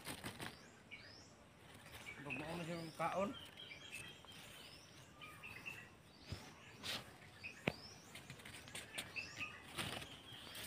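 Small birds chirping, short high gliding chirps repeated every second or so, with a faint voice about two to three seconds in and a few soft clicks near the middle.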